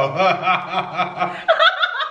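Laughter: a run of short laughing pulses, about four a second.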